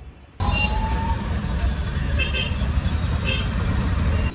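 Auto-rickshaw engine running with a steady low rumble, heard from the passenger seat in street traffic; it starts abruptly about half a second in. A couple of short high beeps come through in the middle.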